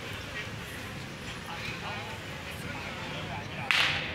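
Night street ambience: faint background voices over a steady low hum, with a single short, sharp burst of noise near the end.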